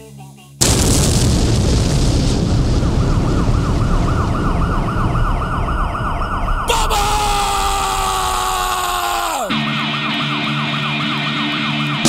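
Sound-effects opening of a punk song: a fast-warbling siren over a loud explosion-like rumble starts suddenly about half a second in. About seven seconds in, a long falling whistle like a dropping bomb sweeps down for about three seconds. Then the rumble cuts off and steady low tones sound beneath the continuing siren.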